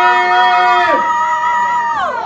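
Long, steady, high-pitched yells from voices, two held notes overlapping. The lower one stops about a second in. The higher one holds until near the end, then slides down.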